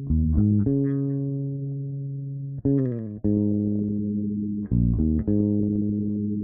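Instrumental rock outro without vocals: bass guitar and guitar playing slow, low notes. The notes are struck in pairs about every two seconds, and each is left to ring and slowly fade.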